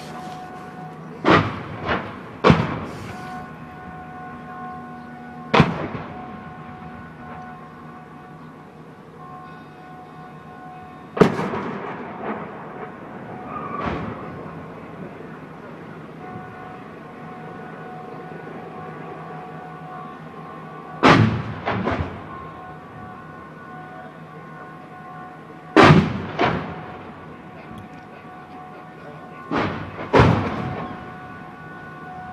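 Mortar rounds exploding: about nine sharp blasts at irregular intervals, several coming in quick pairs, each trailing off in a rolling echo.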